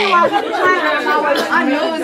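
Chatter of several women's voices talking over one another in a crowded room.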